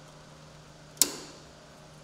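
One sharp click about a second in, with a brief ringing tail: the snowmobile's battery cover strap snapping onto its front tab.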